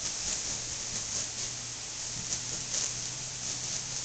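Steady background hiss with a faint low hum, and no distinct event standing out.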